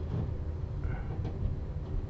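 Low, steady background rumble of room noise, with no distinct event.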